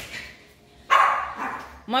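A small dog barking once, sharply, about a second in, the sound fading in the tiled room.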